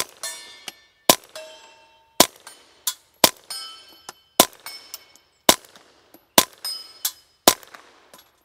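Ruger PC Charger 9mm pistol fired through a threaded-on suppressor with 9mm suppressor ammunition: a string of about nine shots, roughly one a second. Most shots are followed by the ringing of struck steel targets.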